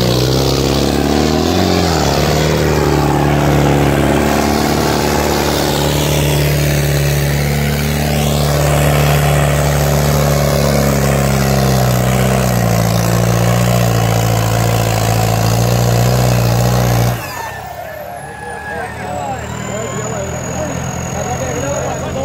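Farmtrac 6055 tractor's diesel engine running hard under heavy load, dragging two disc harrows as its rear wheels dig into loose soil and the front lifts. The engine note holds steady, then cuts out suddenly about seventeen seconds in, leaving a crowd shouting.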